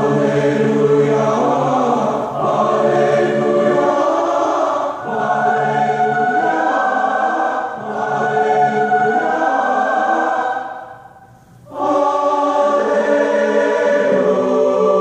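A choir singing a hymn in sustained harmony, phrase by phrase, with a pause of about a second near the end before the next phrase begins.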